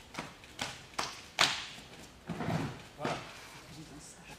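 Slaps and thuds of an aikido exchange on the mats: four quick sharp impacts about half a second apart, the loudest about a second and a half in, then a duller thud a second later.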